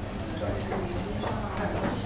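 Indistinct background voices in a small tiled restaurant, with a few faint clicks of a metal spoon against a soup bowl.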